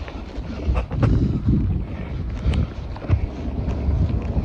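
Wind buffeting a handheld phone's microphone in uneven gusts of low rumble, with a few faint knocks of handling or footsteps.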